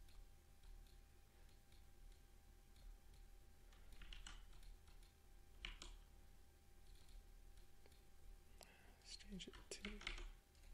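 Near silence with a few faint clicks of a computer mouse: a couple about four seconds in, one near six seconds, and several close together near the end.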